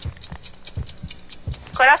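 Marker on a whiteboard, drawing a heart: a quiet run of irregular ticks and scrapes with a few light knocks on the board. A voice shouts a guess near the end.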